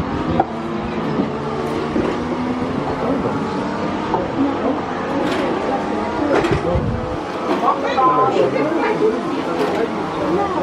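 Indistinct overlapping voices of several people talking, with no clear words.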